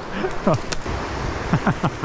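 Steady rush of river rapids with footsteps crunching through dry twigs and brush. Short falling voice sounds come about half a second in and again near the end.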